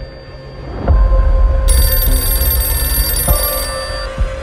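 Telephone bell ringing, with a burst of high, bright ringing from just under two seconds in until near the end. Under it, a heavy low rumble starts about a second in.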